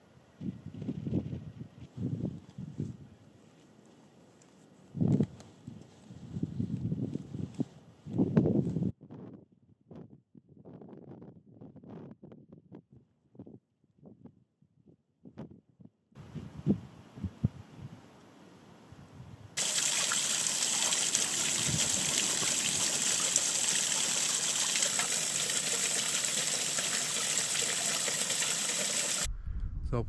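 Wind gusting on the microphone, then, about two-thirds of the way in, a steady rush of running water that stops abruptly just before the end.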